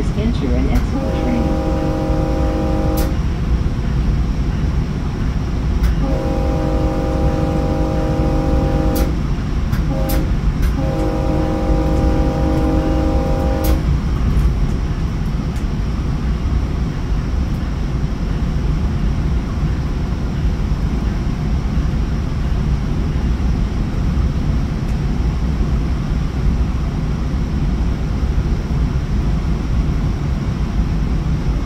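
Commuter train horn sounding the grade-crossing pattern: two long blasts, a short one and a final long one, a multi-note chord heard from inside a passenger car. Under it the steady rumble of the train's wheels on the rails at speed runs on after the horn stops.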